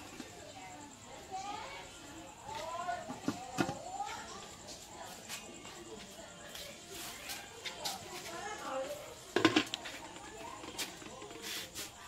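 A few sharp metal clanks from aluminium steamer trays and lid being handled, the loudest about nine and a half seconds in, under indistinct low talking.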